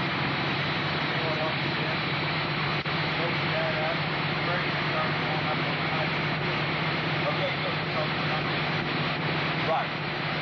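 Dune buggy's 1500-series engine running at a steady speed with an even hum, which the demonstrator says is running on hydrogen gas made from water in his fuel cell.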